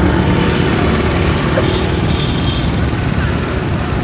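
Steady road traffic with a low engine hum.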